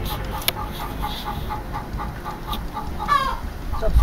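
A bird calling in short notes repeated about four times a second, then a longer falling call near the end, over a low rumble.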